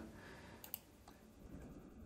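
Near silence, broken by a single faint computer-mouse click about two-thirds of a second in.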